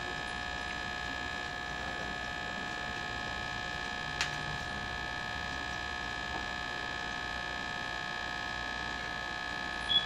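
Steady electrical hum with a high whine on top. There is one sharp click about four seconds in and a brief high peep near the end.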